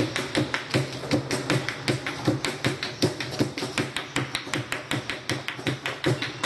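Cajón and dance percussion with no singing: a fast run of sharp strikes, several a second, over deeper thumps.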